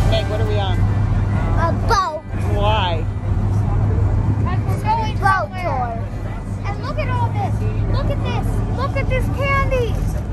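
A passenger ferry's engine drones steadily and low under children's high-pitched, excited voices and calls on the open deck.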